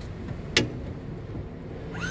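Power-folding third-row seat of a 2016 GMC Yukon XL folding flat under its electric motor: a low steady hum with one sharp click about half a second in.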